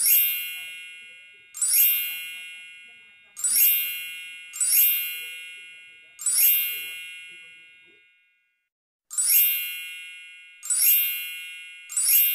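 A bright bell-like ding sound effect, struck about seven times at uneven intervals, each strike ringing out and fading over a second or two, with a brief silence about two-thirds of the way through.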